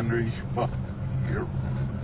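A man's speech played backwards, heard as short unintelligible voice fragments, over a steady low hum.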